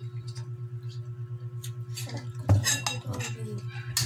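Spoons and forks clinking against bowls and plates as people eat noodles, in scattered light taps with one sharp clatter about two and a half seconds in. A steady low hum runs underneath.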